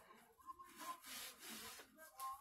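Near silence, with faint rustling of clothing as a skirt waistband and top are pulled and adjusted by hand.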